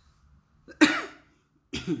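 A woman coughing twice, a sharp loud cough followed about a second later by a weaker one, into her fist. She is recovering from COVID-19.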